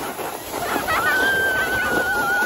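A person screaming while sledding down a snow slope: after a short break, a long, high, steady scream starts again about a second in, over a steady hiss.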